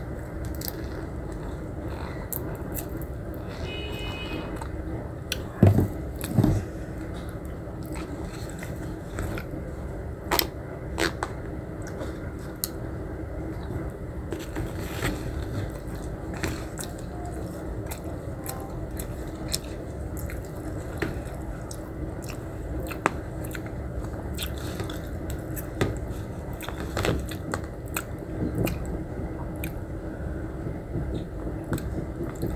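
A person chewing and biting a meal of noodles, meat and rice, with scattered clicks of a plastic spoon against a plastic food box and two louder knocks about five to six seconds in, over a steady low hum.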